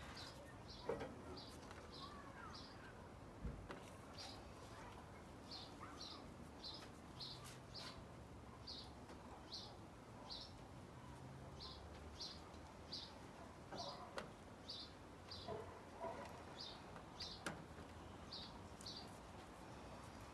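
A bird chirping faintly in the background, a short high chirp repeated about every half second to second, with a few faint clicks.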